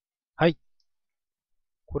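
A man's single short voiced syllable, a brief murmur about half a second in; he starts speaking right at the end.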